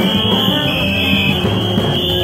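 Live gagá street music from a group playing in a crowd: a steady drum beat with held horn tones, and a shrill, steady high tone sounding over the whole mix.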